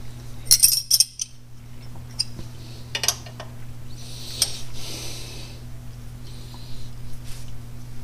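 Metal clinks and taps of a wrench and nuts on the threaded end of a clutch cable at the clutch fork as a locknut is tightened down against the adjusting nut. There are a few sharp clinks about half a second to a second in, another about three seconds in, and a short scraping rustle after that.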